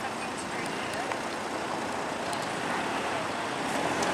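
Steady street traffic noise as a car drives slowly past close by, with faint voices in the background.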